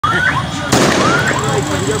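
A single loud, echoing bang of a tear gas canister going off, about a third of the way in, with short rising cries from people in the crowd before and after it.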